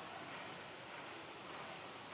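Forest ambience: a steady background hiss with a faint series of short, high rising chirps, about four a second.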